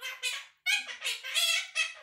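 Quaker parrot (monk parakeet) chattering in its mimicked-speech voice: a rapid run of high-pitched syllables, with a short break about half a second in before a longer burst.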